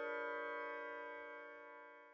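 The closing chord of a logo jingle: a cluster of steady, bell-like tones held and slowly dying away.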